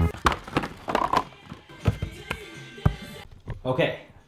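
Painted art panels knocked against each other and set down as they are sorted into stacks: a handful of irregular, dull thunks in the first three seconds. A voice is heard briefly near the end.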